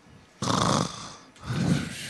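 Two loud, noisy breaths close into a handheld microphone: a sharp, hissy one about half a second in and a second, lower breath near the end.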